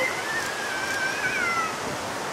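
Heavy ocean surf, a steady rush of breaking waves. Over it comes a long, high, wavering whistle-like call lasting about a second and a half.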